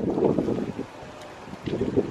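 Wind buffeting the camera microphone in uneven gusts, dying down about a second in and picking up again near the end.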